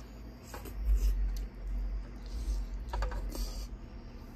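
Close-miked eating sounds: chewing and mouth smacks, with a few sharp clicks of a metal spoon against a glass bowl, over a low rumble.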